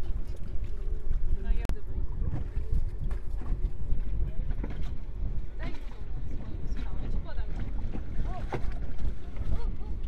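Wind buffeting the microphone as a dense, uneven low rumble, with a sharp click about two seconds in and faint snatches of voices calling from the ship's rail.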